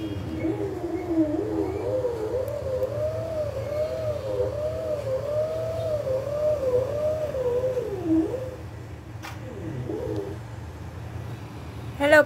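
A woman humming a wordless tune, her pitch rising and falling in smooth arcs for about eight seconds, then briefly again near the end, over a steady low hum.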